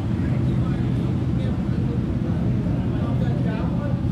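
Several motorcycle engines running at idle with a low, steady burbling.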